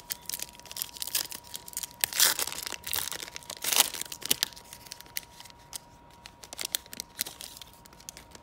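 A foil trading-card pack being torn open and its wrapper crinkled, with two louder rips about two and four seconds in, then crackling as the cards are slid out of the wrapper.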